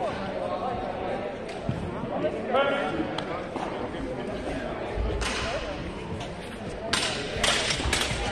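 Footfalls of longsword fencers on a sports-hall floor over voices in the hall. Near the end the two fighters close and exchange blows, and a quick run of sharp knocks is heard.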